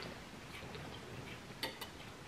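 Quiet room with a few faint, short clicks, two of them close together near the end.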